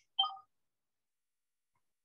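A single short electronic beep of a few mixed pitches, about a quarter of a second long, followed by near silence.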